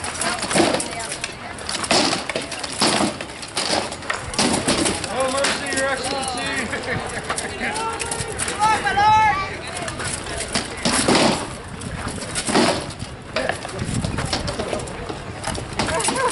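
Rattan swords striking shields and armor in armored combat: sharp cracks, bunched in the first few seconds and again later, with a lull in between.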